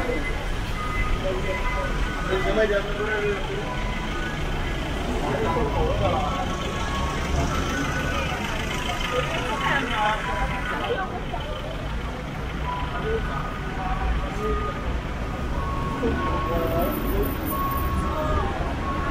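Busy city street ambience: passers-by talking over a steady low hum of road traffic.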